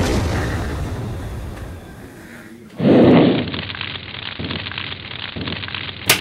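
Cartoon explosion sound effect rumbling and fading away. A second, duller burst comes about three seconds in, followed by softer irregular rumbling pulses.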